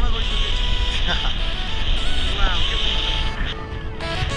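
Wind buffeting an action camera's microphone during a tandem parachute descent, with music playing over it; the steady hiss drops away shortly before the end as the canopy comes in to land.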